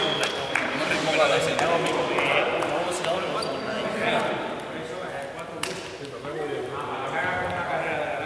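Several people's voices talking over one another in a large echoing hall, with a few sharp smacks among them, the clearest about five and a half seconds in.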